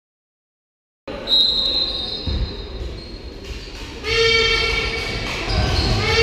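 Basketball gym sound: a high steady whistle tone about a second in, then a scoreboard buzzer sounding from the middle, breaking briefly and sounding again near the end, with ball and court thumps underneath.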